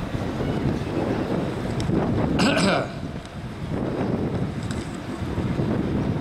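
Wind buffeting the microphone, an uneven low rumble, with a brief louder noise about two and a half seconds in.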